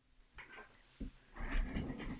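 Hands handling a strip of embossed foil cardstock on a desktop: a light tap about a second in, then a short paper rustle as the strip is set down and shifted.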